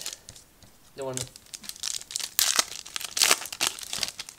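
Foil wrapper of a 1998–99 Upper Deck MVP hockey card pack being crinkled and torn open by hand. The rustling comes in a few loud spells, loudest in the second half.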